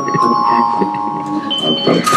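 Soft chiming electronic notes held as steady tones, with a higher note coming in near the end, over laughter and murmuring voices. They are not from the plant-music device, although they were first taken for a plant playing.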